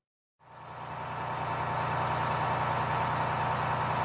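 Bus engine sound effect that fades in after a brief silence and then runs steadily with a low hum.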